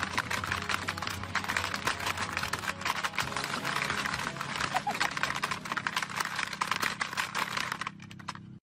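Plastic Hungry Hungry Hippos game clattering as its hippo levers are slammed over and over, a dense, rapid run of clacks with kibble rattling on the board.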